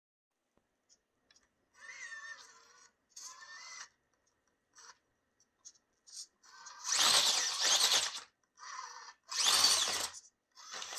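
Axial AX24 micro crawler's Micro Komodo brushless motor and gears whining in short throttle bursts, rising and falling in pitch. The longest and loudest burst comes about two-thirds of the way in as the crawler climbs the rock ramp.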